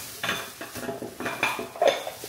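A thin plastic grocery bag rustling and crinkling as hands rummage through it and pull an item out, with a run of short crackles and light clinks.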